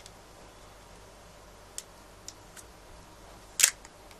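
Small plastic handling sounds: a few faint clicks from fingers working a webcam's plastic clip mount, then one sharp, louder crackle near the end as the protective plastic film on the mount is picked at to peel it off.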